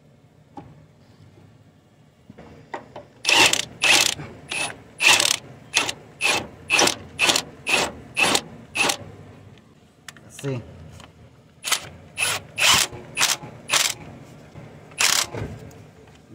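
Cordless Milwaukee M18 power tool spinning bolts on the engine mount in a quick run of short trigger bursts, about two to three a second, starting about three seconds in, pausing near ten seconds, then going on again.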